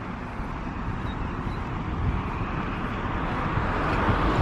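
Wind buffeting the microphone outdoors: an unpitched rush with a rumble underneath that grows gradually louder.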